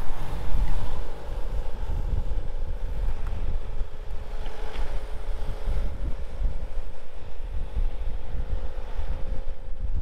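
Wind buffeting the microphone with an uneven low rumble, and a faint steady mechanical hum that sets in about a second in.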